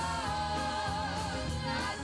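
Live gospel music: a woman's lead voice holds a long note with vibrato over a band, then moves to new notes near the end.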